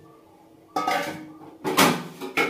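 Metal cookware clattering: a steel bowl and an aluminium cooking pot knocked together, two clangs, the first about three quarters of a second in and the second near the end, each ringing briefly.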